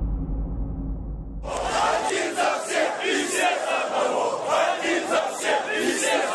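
A large street crowd shouting together, starting abruptly about a second and a half in after a low rumble.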